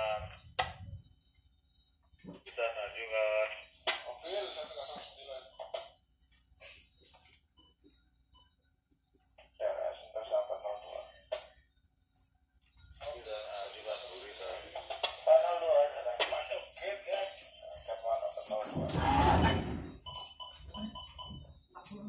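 Indistinct speech in several bursts separated by quiet gaps, with a loud low thump about nineteen seconds in.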